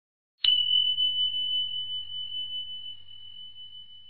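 A single high bell-like chime sound effect, struck about half a second in and ringing on as one steady tone that slowly fades. It marks the end of the answer time and the reveal of the answer.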